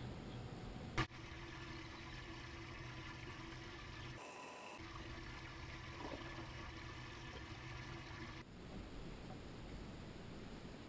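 Faint steady background hiss and low hum of open water around a boat, broken by a single sharp click about a second in.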